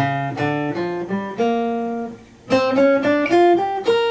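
Steel-string acoustic guitar playing a single-note blues lead lick in G minor pentatonic, around the flat five. There are two phrases of plucked notes, some held, with a short pause a little after halfway.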